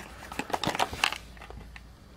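Two small cardboard boxes handled and turned in the hands: light rubbing with a few small taps and clicks, mostly in the first second.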